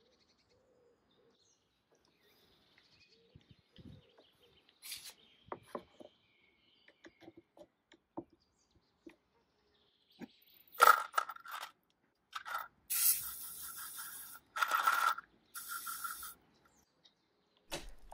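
Faint handling noises, then sharp clicks and three short hissing bursts of aerosol spray, which fits cyanoacrylate (CA) glue activator being sprayed onto glued plywood clamping blocks.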